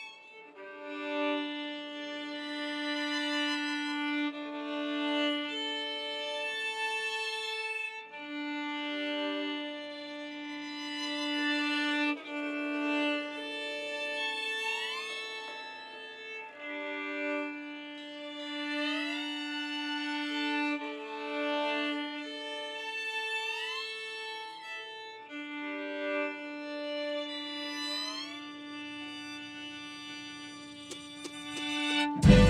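Bowed strings led by violins playing a slow instrumental intro: long held notes with vibrato, several sliding up in pitch, with a short break about eight seconds in.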